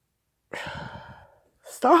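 A woman's long audible sigh about half a second in, falling in pitch as it trails off, followed near the end by the start of a spoken word.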